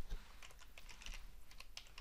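Computer keyboard typing: a quick, faint run of keystrokes as a single word is typed.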